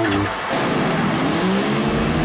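Logo intro sound design: the electric guitar notes stop and a noisy whoosh sweeps down and back up in pitch, with held tones rising under it in the second half.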